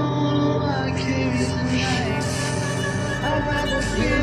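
Tense horror film score: a steady low drone with gliding mid-range tones. High, hissing textures come in about a second in, and a deeper rumble swells near the end.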